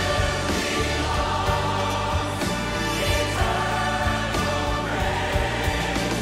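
Large choir and orchestra performing a worship song, full chorus singing over sustained chords with a steady beat.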